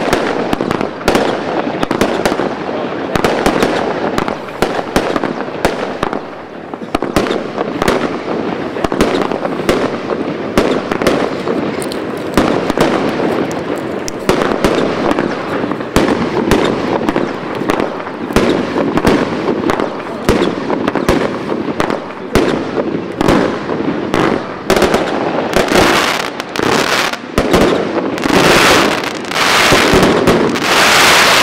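Lesli 'Pamela' fireworks cake firing shot after shot in quick succession, with launch thuds and bursting stars over a continuous hiss of burning effects. The shots come denser and louder in a finale barrage near the end.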